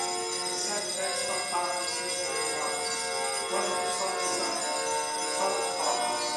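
Small altar bells ringing continuously in a jangling peal, over music with sustained chords that shift every second or so.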